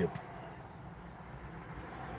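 Steady low background noise with no distinct events, in a gap between spoken phrases; the last word of a man's speech cuts off right at the start.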